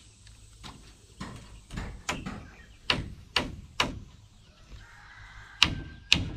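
Hammer blows on wood, a run of sharp knocks in irregular groups, the loudest near the end, as wooden roof battens are nailed to the frame of a small shed.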